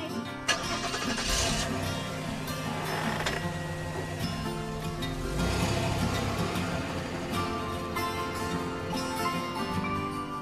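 A cartoon car engine sound effect starts about half a second in and keeps running as the car drives off, under background music.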